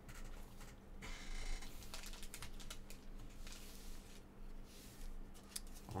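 Thick trading cards being handled and slid against one another, with soft rustling and a few light clicks and taps. A faint steady low hum runs underneath.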